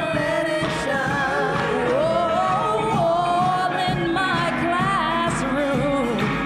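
Gospel singing by a church praise team with musical accompaniment, the voices holding long, wavering notes.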